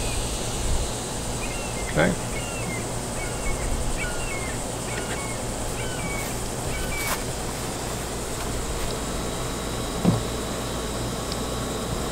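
Outdoor background with a steady low hum, over which a bird gives a run of short, repeated chirps for several seconds. A single small click comes near the end.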